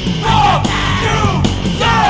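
Hardcore punk band recording: loud distorted guitars, bass and drums, with shouted vocals.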